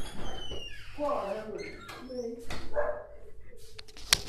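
Indistinct voices of people talking in a small room, with a few high, falling whine-like sounds in the first second.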